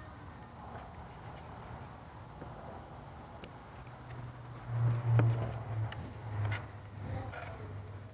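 A low steady motor hum that swells for about two seconds midway, with a few faint clicks of small plastic wiring parts being handled.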